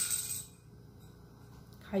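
Small hard objects falling and clattering on the floor, the clatter dying away within about half a second, then quiet.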